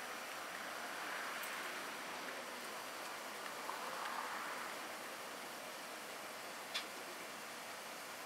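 Steady background hiss, with one sharp click about three-quarters of the way through.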